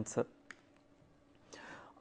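A pause in a man's lecture: the end of a spoken word, a faint click about half a second in, near silence, then an audible breath in near the end.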